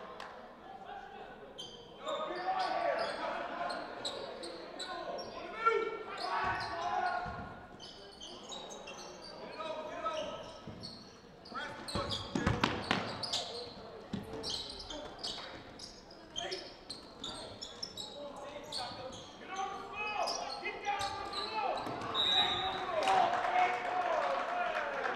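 Basketball game in a gym: a ball bouncing on the hardwood floor with sharp clicks and knocks, amid indistinct shouting from players and coaches, all echoing in the large hall.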